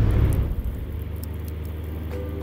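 A steady low rumble with a hiss over it that fades in the first second: a logo transition sound effect, leading into the closing music.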